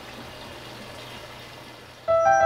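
Faint, steady running-water noise with a low hum underneath, typical of aquarium water circulating.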